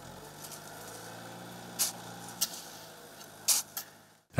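Shovels scraping and scooping into sand, a few short sharp scrapes, over the steady low hum of an engine running.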